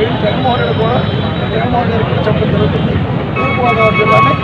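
A man speaking Telugu into a bank of press microphones over a steady din of street and crowd noise. A steady high tone sounds for about a second near the end.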